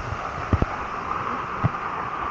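Steady rush of a waterfall, with a few short low knocks about half a second in and again near the end.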